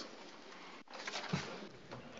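Quiet hiss of open microphones in a parliament chamber, cut off for an instant just under a second in, with a short faint low sound about a second and a half in.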